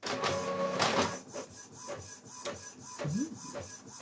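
New ink-tank printer starting a print job: its mechanism runs loudest in the first second, then settles into a quieter steady whine with repeated short whirs as the page feeds.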